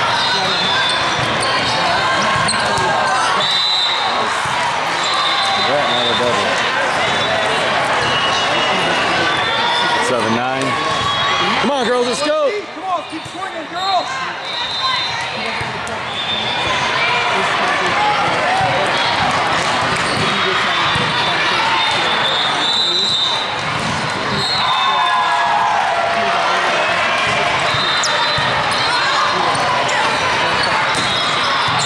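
Volleyball being played in a large, echoing hall: a continuous din of players' and spectators' voices, with the thuds of the ball being served, passed and hit. It goes briefly quieter about twelve seconds in.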